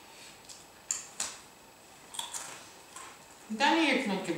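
A few small, sharp clicks and light rustling as picnic food and its wrappings are handled. A voice starts near the end.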